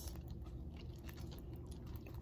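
Metal spoon spreading tomato sauce over pizza dough on a metal baking tray: faint soft scraping and small clicks.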